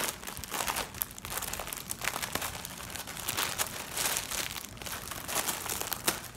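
Plastic clothing packaging crinkling and rustling in quick, irregular crackles as it is handled.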